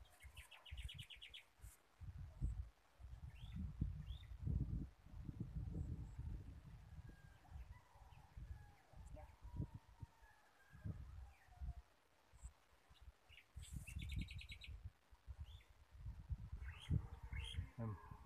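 Wind buffeting the microphone in gusts, with a bird's rapid chirping trill near the start and again about fourteen seconds in.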